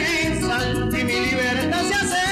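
A male singer singing a Latin love song into a microphone over amplified backing music with a steady low accompaniment; his voice holds and bends long notes.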